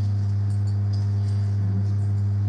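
A steady, unchanging low hum from the sound system, with a faint buzzy ring of overtones above it and no change in pitch or level.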